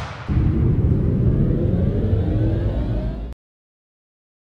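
Loud low rumbling noise with faint tones gliding upward through it, opening on a fading hiss. It cuts off suddenly a little over three seconds in.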